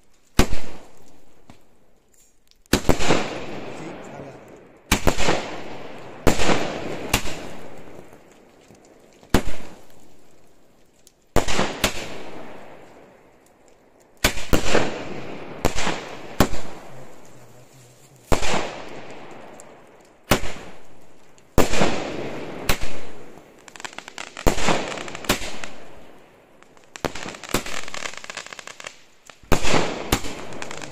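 A thirty-shot aerial firework cake firing shot after shot: each shot is a sharp bang followed by a fading tail of sound. The shots come about one to two seconds apart, some in quick pairs.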